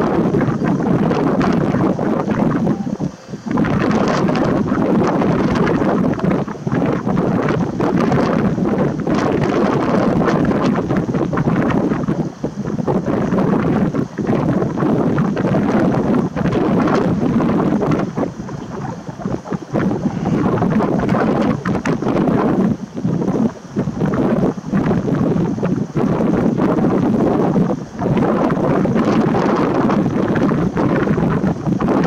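Strong wind blowing across the camera's microphone: a loud, continuous rumbling rush with a few short lulls.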